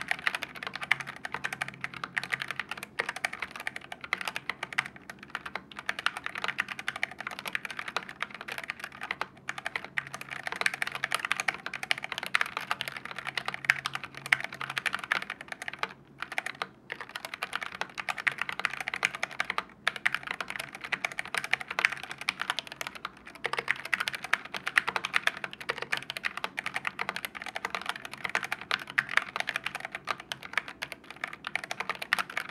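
Fast, continuous typing on a Tecware Phantom Elite full-size mechanical keyboard: a dense run of key clicks and clacks, broken by a few brief pauses in the middle.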